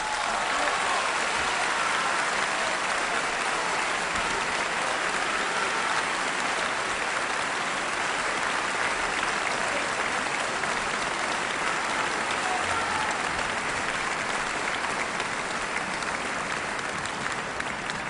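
Concert-hall audience applauding steadily, breaking out as the last orchestral chord of the aria dies away.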